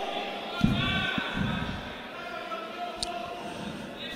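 Boxing-hall ambience: voices calling out from around the ring, with a few dull thuds from the boxers in the ring about half a second to a second in and a sharp click near the end.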